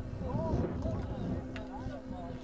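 People talking in the background, over wind buffeting the microphone and a steady low hum.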